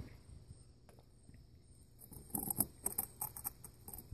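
A screwdriver scraping and clicking against metal inside the cast housing of a Unimog air-brake regulator as it prises at a filter mesh stuck fast in the bore. It is quiet at first, with one faint click, then a run of small, quick, scratchy clicks over the last second and a half.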